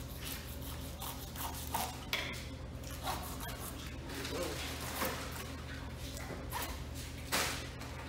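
A serrated knife cutting through a red drum fillet and scraping on the plastic cutting board in short, irregular strokes, over a steady low background hum.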